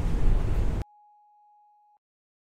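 Outdoor background noise, heaviest in the low rumble, that cuts off abruptly under a second in. It is followed by a faint, steady pure tone lasting about a second, which then stops.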